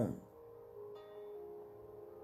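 Soft background music of held, ringing tones, with a new note coming in about a second in.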